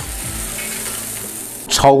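Fried crayfish and hot rapeseed oil poured from a wok into a stainless steel colander, sizzling steadily as the oil drains off. A voice starts near the end.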